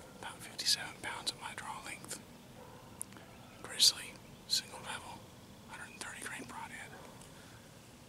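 A man whispering in short phrases, with sharp hissing s-sounds.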